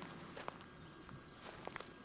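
Faint footsteps on brick paving: a few irregular, scattered taps over a low background hiss.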